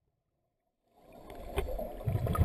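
Muffled underwater sound picked up by a camera underwater, fading in about a second in: a low rumble of moving water with a sharp click about halfway through.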